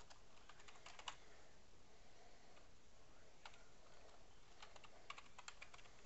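Faint typing on a computer keyboard: a quick run of keystrokes about a second in, a single keystroke midway, then another quick run near the end.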